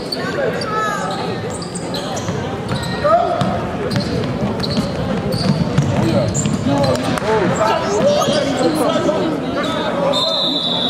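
A basketball bouncing on a hardwood court with sharp, repeated knocks, amid indistinct voices of players and spectators, echoing in a large hall.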